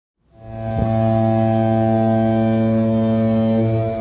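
Cinematic logo-intro music: one deep, sustained brass-like drone that swells in within the first half second, with a short hit just under a second in, holds steady, and begins to fade near the end.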